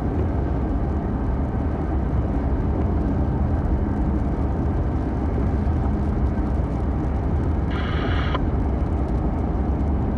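Steady low road and tyre noise heard from inside a car cruising on a rain-wet highway. Near the end a brief higher-pitched sound lasts about half a second.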